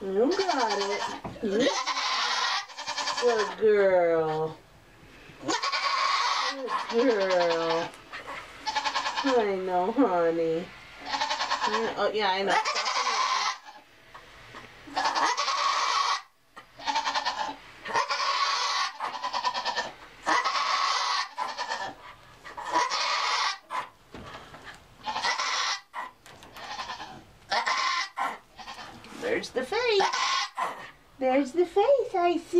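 Nigerian Dwarf doe in hard labour, crying out over and over as she pushes. In the first twelve seconds or so there are several long, wavering bleats that fall in pitch. Rough, strained, rasping calls of about a second each follow throughout.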